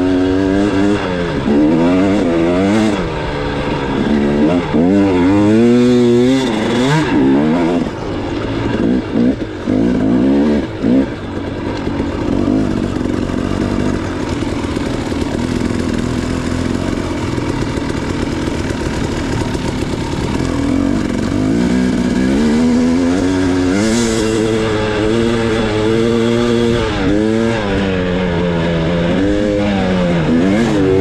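Dirt bike engine revving hard and easing off again and again as it is ridden over sand, its pitch climbing and dropping with each burst of throttle. There is a steadier stretch in the middle.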